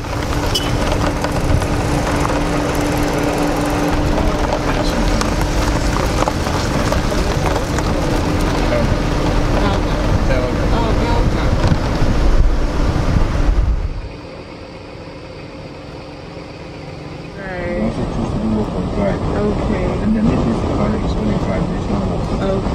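A car driving along a road, heard as heavy wind and road noise with a steady low hum. About fourteen seconds in it cuts off suddenly to a much quieter background, with indistinct voices in the last few seconds.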